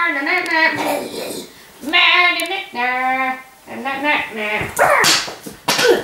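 A child's high-pitched voice making a run of short, wordless squeals and whimpering cries that slide up and down in pitch.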